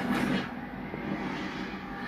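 Film soundtrack played through a TV and picked up off the screen: a rushing, whooshing sound effect over a low rumble, loudest in the first half second.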